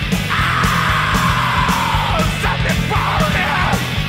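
Loud rock music with a pounding beat and a yelled vocal: one long held shout that slowly falls in pitch, then a few shorter cries.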